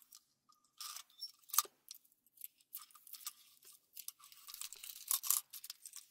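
Faint, irregular crackling and scratching close to the microphone, with one sharper snap about a second and a half in and a denser run of crackles near the end.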